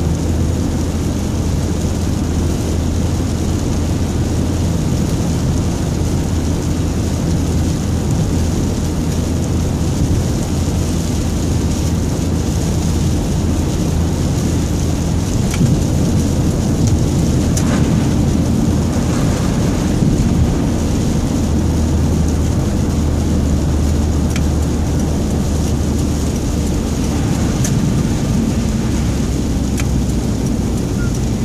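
Steady road noise from a car driving on a wet, slushy freeway: tyres hissing on the wet surface over a low engine and drivetrain hum, heard from inside the car.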